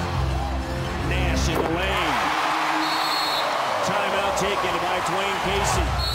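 Basketball game sound from an arena: a ball dribbling on the hardwood court amid crowd noise that swells about two seconds in, with music playing underneath.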